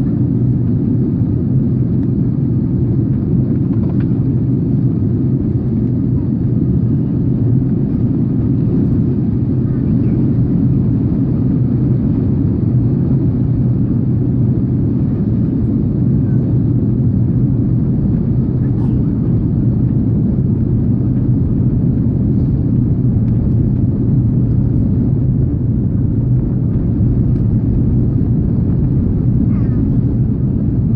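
Steady rumble of a jet airliner's cabin in flight, engine and airflow noise with a constant low hum.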